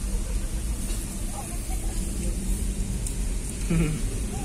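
Car engine and tyres heard from inside the cabin, a low steady rumble as the car rolls slowly along.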